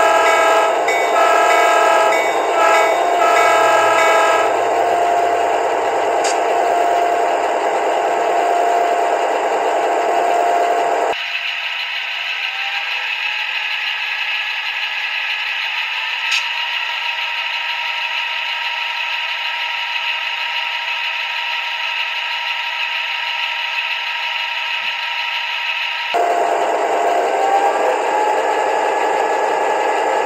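Diesel switcher sounds from the DCC sound decoder of an Athearn Genesis MP15 model locomotive, played through a Scale Sound Systems replacement speaker: a few short horn blasts in the first seconds, then the engine running steadily with a full low end. About eleven seconds in, the same sounds come through the stock factory speaker, thin and without bass, the engine note climbing. Near the end the upgraded speaker returns, fuller again, its engine note also rising.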